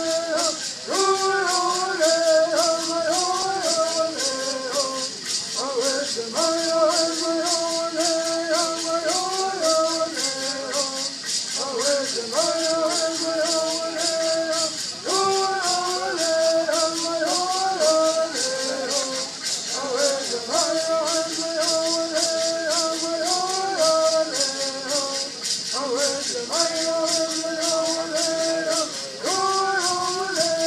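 Southern California Native American bird songs: a group of men singing in unison in repeated phrases of several seconds with short breaks, over gourd rattles shaken in a steady, rapid beat.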